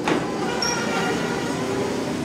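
Hydraulic elevator car doors sliding open. A clunk comes right at the start, and then the door operator runs steadily as the panels part.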